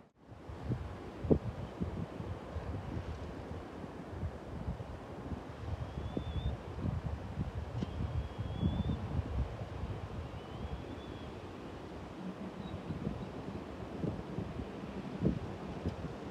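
Wind buffeting the microphone: a low, irregular rumble that rises and falls in gusts.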